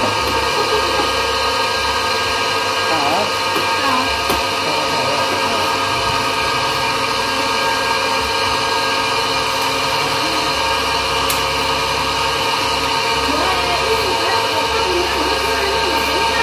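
Electric auger grinder running steadily under load, a constant motor hum and whine made of many steady tones, as it extrudes a thick rope of ground paste.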